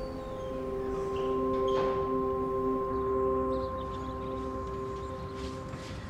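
Background score: a drone of several held, steady tones that swells a little in the middle and fades slightly toward the end.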